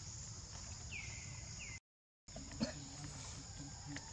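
A steady high insect drone under a low rumble, with two short high chirps gliding downward in the first half. The sound drops out completely for about half a second around the middle, then a single sharp click comes just after.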